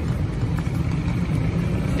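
City street traffic: a steady low rumble of cars passing on the road.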